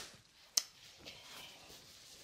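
A single sharp click about half a second in, then soft rustling of dress fabric being handled.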